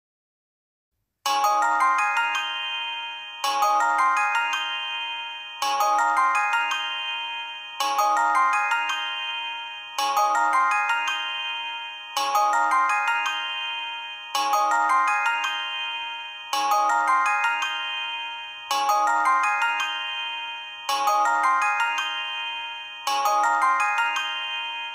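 Incoming-call ringtone of a calling app on an Android tablet, starting about a second in: a short rising run of bell-like notes that repeats about every two seconds, each phrase fading before the next.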